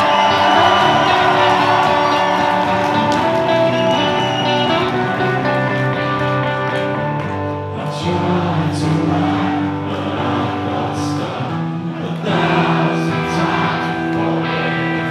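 Live rock band playing a slow song, with electric guitars holding sustained chords and singing coming in about halfway through.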